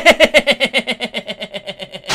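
A man laughing hard: a fast, even run of pitched 'ha' pulses, about ten a second, that slowly die away.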